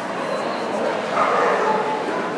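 A dog gives a short, high yelp about a second in, over the chatter of a crowded hall.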